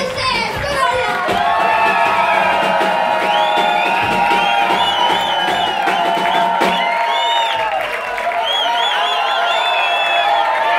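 Crowd cheering and whooping over a live band still playing; the deepest bass drops out about seven seconds in.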